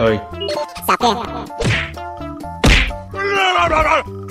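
Slapstick sound effects over background music: a loud whack about two and a half seconds in, the sound of the robot's blow, followed by a falling cry of pain.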